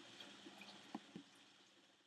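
Near silence: faint background hiss fading out, with two soft clicks about a second in.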